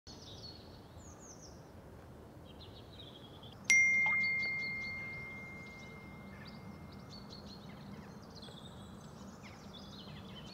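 Smartphone text-message notification: a single bright ding about four seconds in that rings out and fades slowly over several seconds, with birds chirping throughout.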